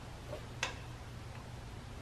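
A soft knock and then one sharp metallic click about half a second in, from a hand working the intake elbow fitting on a 1941 Caterpillar D2's air cleaner. A steady low hum runs underneath.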